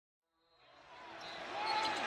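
Basketball game sound fading in from silence: arena crowd noise with sneakers squeaking on the hardwood court.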